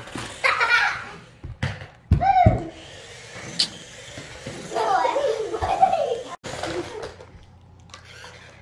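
Young children's voices: short exclamations and giggles, with one high rising-and-falling cry about two seconds in.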